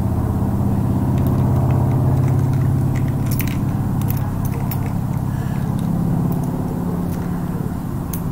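Steady low mechanical hum, engine-like, with a few faint clicks about three to four seconds in.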